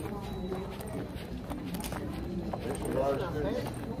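Indistinct talking, loudest past the middle, over scattered sharp clicks of footsteps on a hard floor.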